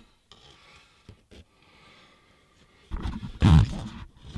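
Handling noise: a few faint clicks, then a brief louder rustling scrape with a low rumble about three seconds in, from the hand-held camera moving against the car's headliner and interior trim.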